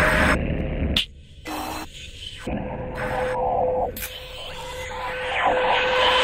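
Glitchy electronic music built from bursts of static-like noise that stop and start abruptly over a steady humming tone, swelling into a wash of hiss near the end.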